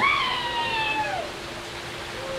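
A child's high-pitched shout, rising then falling over about a second, over the steady rush of a pool waterfall.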